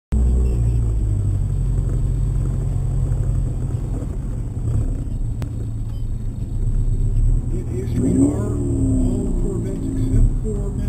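Ford ZX2's four-cylinder engine idling steadily, heard from inside the cabin. A voice speaks over it near the end.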